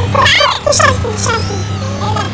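Sped-up, chipmunk-style high-pitched vocals of a song, the voice gliding quickly up and down, over a steady low bass note.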